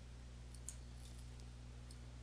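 Faint computer mouse clicks over a low steady hum, one slightly sharper click a little under a second in, as the mouse button is released after dragging out a control.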